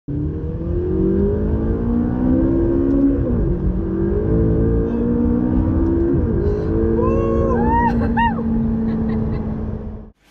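Car engine accelerating hard, heard from inside the cabin: the pitch climbs, drops sharply twice as the car shifts up and climbs again, then holds steady. About seven seconds in, a few short, high-pitched rising-and-falling cries, like a passenger whooping, come over the engine.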